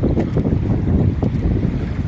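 Wind buffeting the microphone in a steady low rumble, over choppy sea water around a small outrigger boat, with a few faint splashes or knocks.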